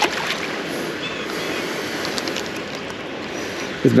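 A quick splash as a small crappie is dropped back into shallow water, then a steady, even rushing noise.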